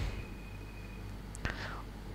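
Pause between a man's spoken sentences: a low steady hum of room tone, with one short breathy sound about one and a half seconds in.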